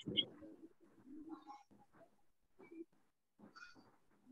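Faint, low bird calls: a few short notes with gaps between them.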